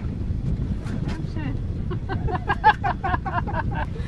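Wind buffeting the microphone as a steady low rumble, with excited voices and laughter coming in about halfway through.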